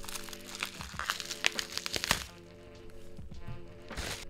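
Plastic bubble-wrap packaging crinkling and crackling as it is pulled off a box by hand, with quick crackles thick in the first two seconds and sparser after. Soft background music plays underneath.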